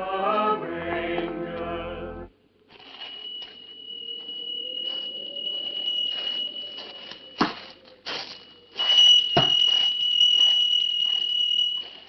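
Choir carols from a radio cut off suddenly about two seconds in. Then a steady high-pitched tone sets in and grows louder, with scraping noises and two sharp knocks.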